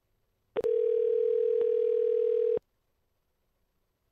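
Telephone ringback tone of an outgoing call: one steady two-second ring, starting about half a second in and cutting off sharply, the sign that the called phone is ringing.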